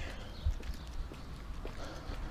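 Footsteps of a person walking on pavement: a steady run of soft footfalls over a low rumble.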